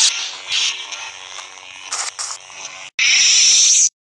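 Added lightsaber-fight sound effects: a humming blade with swings and clashes, then a loud noisy strike lasting about a second that cuts off suddenly just before the end.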